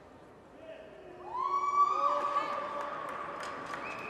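Spectators' long drawn-out shouts of encouragement during a bench press attempt. Voices rise into high held notes about a second in and keep going, with another higher shout starting near the end.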